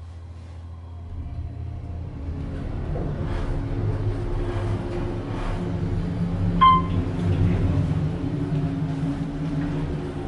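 Otis Series 1 elevator car travelling upward smoothly: a low, steady machinery hum builds up about a second in and holds, and a single short electronic chime sounds about two-thirds of the way through.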